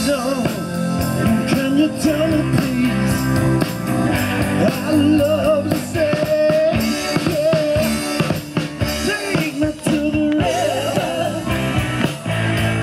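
Live rock band playing loudly: electric guitars, bass and a drum kit over a steady beat, with a wavering lead line on top.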